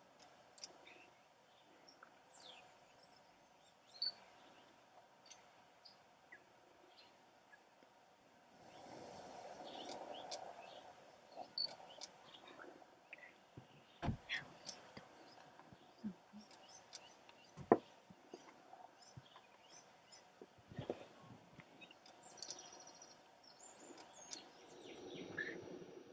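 Quiet outdoor ambience with scattered faint bird chirps and a few sharp clicks. A soft rush of noise swells about eight seconds in and again near the end.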